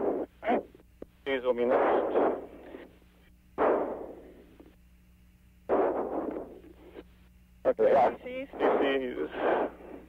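Crew voices on the space shuttle's radio intercom loop, coming in several short, unclear bursts with a narrow, telephone-like sound. Under them runs a steady electrical hum, and there is a sharp click near the end.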